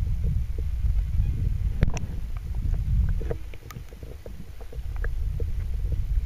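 Low, steady underwater rumble of water moving around a submerged camera, with scattered small clicks and ticks and one sharper click about two seconds in.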